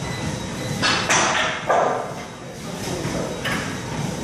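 A few short rustling noises and a thump from a person shifting position on a gym mat, about a second in, over steady room noise.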